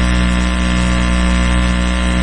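A steady, loud low hum with a buzzing edge that does not change.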